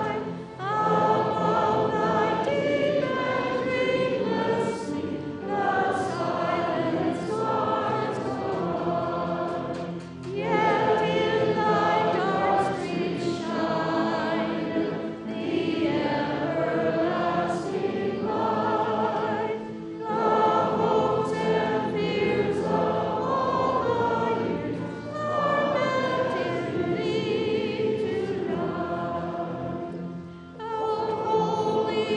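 A congregation singing a hymn together, in long held phrases with brief breaks between the lines.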